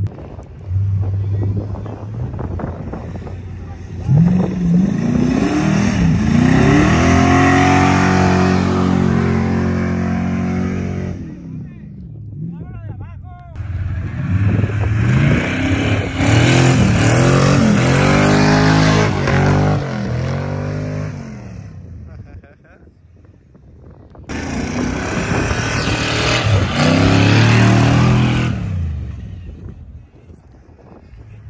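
Off-road pickup truck engine revving hard as the truck drives and climbs through dune sand, its pitch repeatedly rising and falling in three long bursts with brief lulls between.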